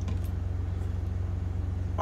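Steady low mechanical hum, unchanging throughout.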